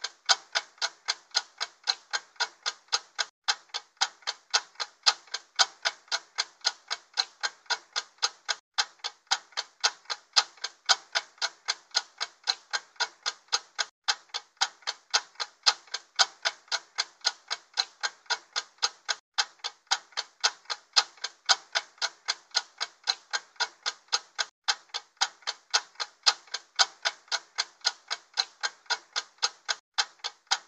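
Stopwatch ticking sound effect: an even run of sharp ticks, about three a second, with a brief break every five seconds or so.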